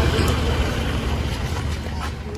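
A car engine idling: a low rumble that eases off slightly toward the end.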